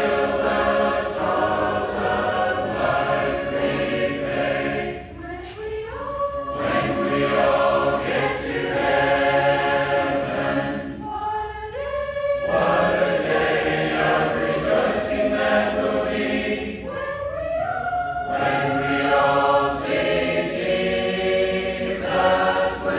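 Congregation singing a hymn a cappella in mixed voices: long held notes, with short breaths between phrases about every six seconds.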